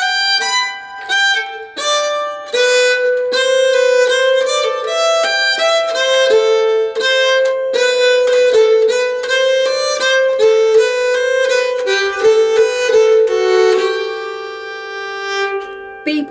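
Nyckelharpa, the Swedish keyed fiddle, bowed at a slow, even teaching pace, playing a polska melody note by note.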